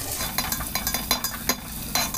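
Sliced onions sizzling in hot oil in an aluminium pot while a metal spatula stirs them, scraping and clinking against the pot in a run of short clicks. The onions are being fried toward golden brown.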